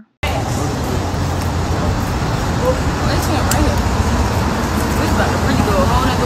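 Steady road-vehicle noise recorded on a phone: a low rumble with traffic hiss. It cuts in suddenly, with faint voices under it and a few small clicks.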